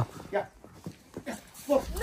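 A mostly quiet stretch, then near the end a loud shouted "Nu!" in a high voice whose pitch rises and falls.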